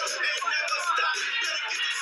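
Live hip-hop performance: a rapper's vocals over music, with thin, tinny sound that has no bass at all.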